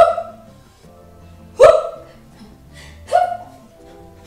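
A woman's short, loud exclamations of "woo!", three of them about a second and a half apart, over faint background music.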